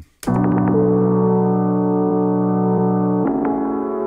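A slowed-down piano chord loop time-stretched in Ableton Live's Beats warp mode, sustained chords changing twice after a brief dropout at the start. Beats mode makes it sound pretty choppy, the mode being ill-suited to melodic material.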